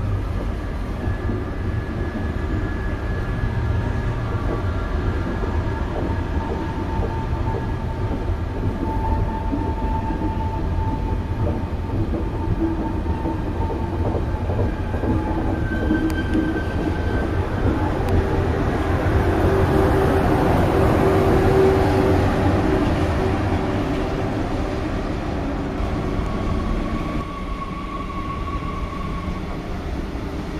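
A TGV Duplex double-deck high-speed trainset rolling past: a steady rumble of wheels on rail with faint whining tones, growing louder past the middle. About three seconds before the end the sound drops and changes as the scene moves to another train.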